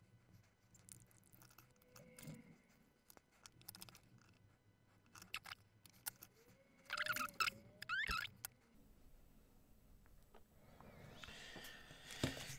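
Quiet handling noise of a circuit board, potentiometers and wires being fitted into an effect pedal's enclosure: scattered light clicks and rustles, with a louder squeaky scrape lasting about a second and a half around seven seconds in.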